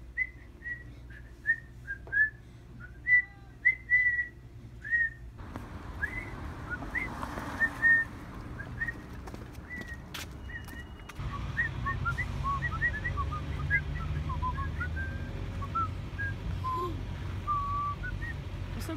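A tune whistled in short, quick notes, carrying on through the whole stretch.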